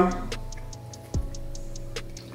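Background music: a beat with fast, even hi-hat ticks and one deep kick drum a little over a second in, over held chord tones.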